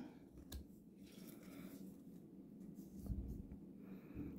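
Faint rustling and a few soft clicks of baseball trading cards being handled and slid from one to the next while going through a pack.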